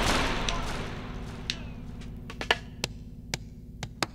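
The long, fading tail of a deep booming hit dies away over the first two seconds, leaving a low hum. Sharp isolated clicks and pops follow at uneven intervals: the stylus riding a vinyl record's lead-in groove before the music begins.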